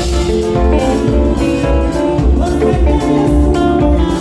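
A band playing Ghanaian gospel highlife: an Epiphone Special II electric guitar picks a line over bass and drums that keep a steady beat of about two pulses a second.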